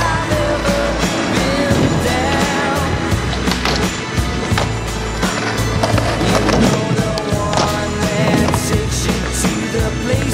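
Music with a beat playing over skateboard sounds: urethane wheels rolling on concrete and the board clacking down.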